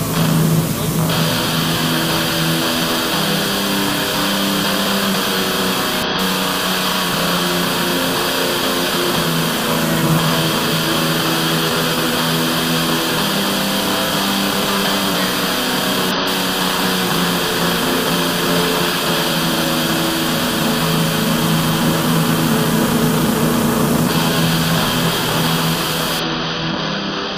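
A dense, steady wall of distorted noise over a droning low hum, without breaks or beats: harsh noise of the kind that opens noisegrind tracks.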